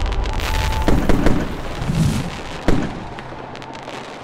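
Fireworks bursting and crackling, with a few sharper bangs about a second in and near three seconds, dying away towards the end.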